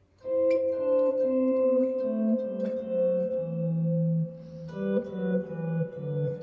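Clean-toned electric guitar, Stratocaster-style, playing a two-voice scale drill in G major: an upper note rings on while the bass notes walk down the scale one step at a time. A fresh pair of notes comes in near the end.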